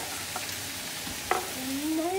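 Onions, peppers and mushrooms sizzling in a large cast iron pan with a steady hiss, while a chef's knife scrapes and taps on a wooden cutting board, with one sharp knock about a second in.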